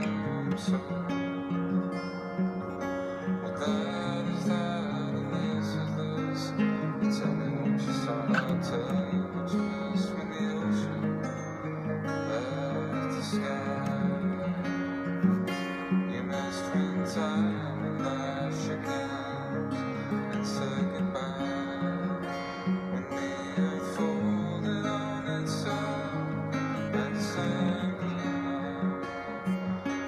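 Acoustic guitar in a tuning a half step below open D, picked and strummed in a steady rhythm along with a recording of the song.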